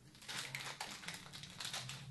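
A bandage's wrapping being peeled and crinkled open in gloved hands: a rapid, irregular run of crackles and rustles.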